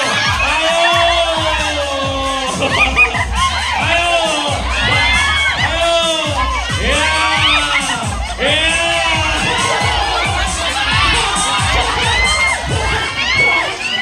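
A crowd of women and children shouting and cheering, many voices overlapping loudly and without pause.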